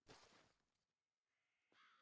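Near silence, with a faint short hiss at the start and a faint crow caw near the end.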